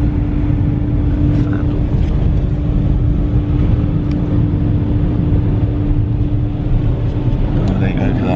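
Porsche Cayenne GTS idling, heard inside the cabin: a steady low rumble with a steady hum over it that stops about seven seconds in.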